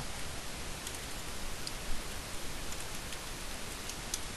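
A few faint computer-keyboard keystrokes over a steady background hiss.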